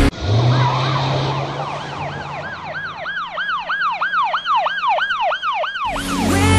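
Emergency vehicle siren in a fast yelp pattern: rapid up-and-down wails, about three a second, growing stronger until it cuts off suddenly near the end. Under the start is a low steady hum.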